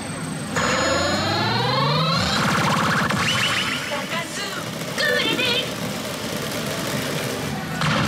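Electronic jingle and sound effects from a 'yes! Takasu Clinic Chou Seikei BLACK' pachinko machine during its win sequence. A cluster of tones sweeps upward for about two seconds, then short chimes, then a warbling effect about five seconds in, all over a constant dense din.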